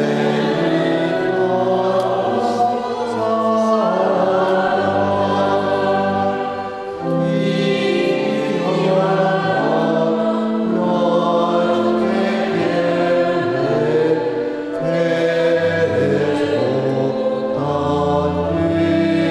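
A choir singing a slow sacred hymn in phrases of held notes, with brief breaks between phrases.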